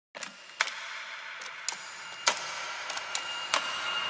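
A series of short, sharp clicks, about eight in four seconds at uneven spacing, over a low hiss, with a faint steady high tone coming in near the end.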